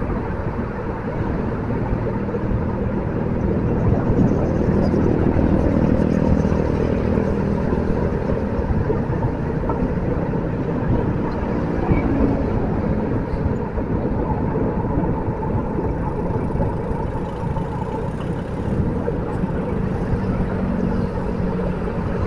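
Steady road noise heard while moving along a city avenue: wind buffeting the microphone over a low, even engine hum and passing traffic.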